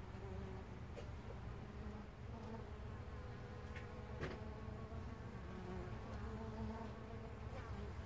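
Carniolan honey bees buzzing at a hive entrance: a steady hum with single bees' buzzes rising and fading as they fly in and out. A faint tick about four seconds in.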